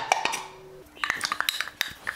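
Steel pot and utensil clinking and scraping as its contents are tipped into a non-stick frying pan: a quick, irregular run of metallic clicks starting about a second in.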